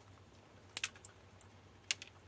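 Short sharp clicks from a screwdriver prying a hot-glued fuse holder loose in an e-bike battery's charge-port housing: two close together a little under a second in, and one more near the end.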